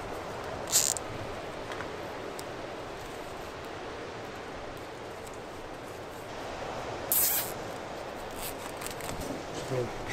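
Lobster pot being worked by hand: two short scratchy rustles of twine and netting, about a second in and again around seven seconds, over a steady outdoor background hiss.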